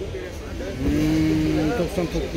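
A car engine running steadily, with men talking over it.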